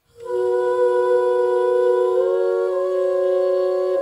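Jazz big band entering from silence with a held chord of several pitches. One inner note steps up about halfway through, and the whole chord moves to new notes right at the end.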